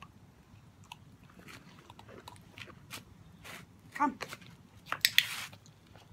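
A Great Dane puppy chewing a training treat: scattered small crunching clicks, with a cluster of sharper clicks and a short rustle a little after five seconds in.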